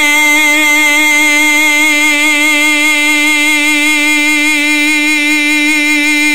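A man's voice holding one long sung note in a chanted Arabic supplication, steady in pitch with a slight waver.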